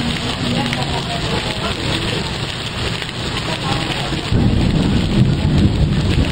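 Heavy rain pouring down, with the low rumble of a container freight train rolling past. A louder deep rumble sets in suddenly about four seconds in.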